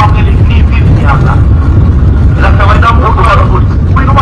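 A voice talking continuously over a loud, steady low rumble.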